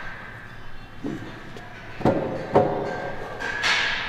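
Gym room noise with two sharp knocks about half a second apart, a little past the middle.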